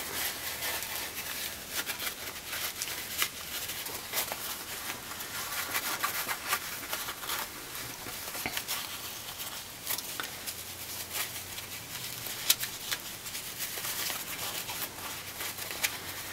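Cotton fabric rustling and rubbing as fingers work a small quilted ornament right side out through its turning hole. It makes a faint, steady crackle of small rubs and clicks.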